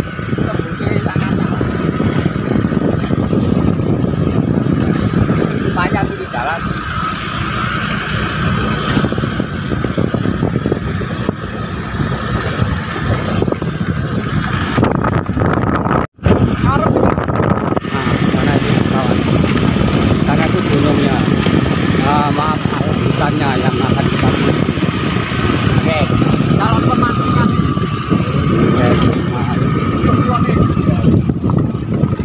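Small motorcycle running at riding speed over a rough dirt track, with steady road and engine rumble on the microphone. The sound cuts out for an instant about halfway through.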